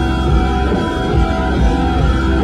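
Rock band playing live: electric guitars and drums.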